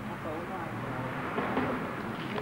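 Faint, indistinct talking over background noise, with a few light clicks near the end.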